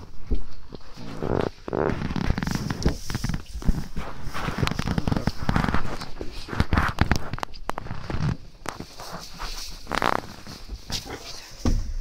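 Goats feeding at a wooden hay rack: irregular rustling and crackling of dry hay, with many short knocks.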